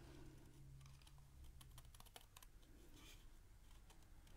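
Faint snipping of scissors cutting stamped cardstock shapes by hand: a scatter of small, irregular clicks over a low steady hum.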